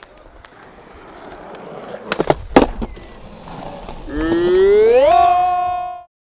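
Skateboard wheels rolling on concrete, growing louder, then a few sharp clacks of the board on the ground about two seconds in. Near the end a loud, drawn-out yell rises in pitch, holds, and cuts off suddenly.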